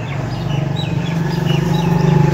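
Small birds chirping, several short calls scattered through, over a steady low hum that grows louder toward the end.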